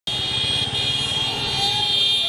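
A group of boda boda motorcycles running together, their engines pulsing low, with several horns held on steady high tones over them.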